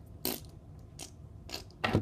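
Small plastic toy figures clicking and knocking against a plastic lid as they are handled: four or five short, sharp clicks, the last one near the end deeper.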